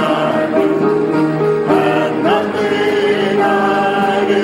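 A recorded gospel song: a choir singing with musical accompaniment, at a steady, full level.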